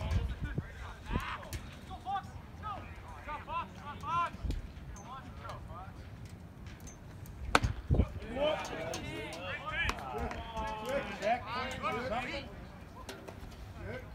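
Voices of spectators and players at a baseball game, with one sharp crack about seven and a half seconds in as a pitch reaches home plate. Several voices call out at once just after it.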